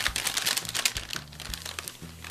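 A paper gift bag crinkling and rustling as a hand rummages inside it to pull an item out. The crinkling is dense in the first second and thins out toward the end.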